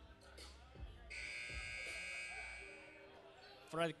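Game buzzer sounding once, a steady electronic tone lasting about a second and a half, over a few thuds of a basketball being dribbled on the court.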